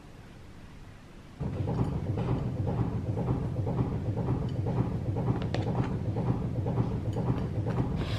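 Washer-dryer tumble-drying clothes: a steady low rumble of the turning drum with irregular light knocks, starting abruptly about a second and a half in.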